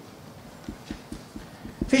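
Soft, low knocks, about four a second, on the desk that carries the table microphone while papers are handled. A man's voice starts near the end.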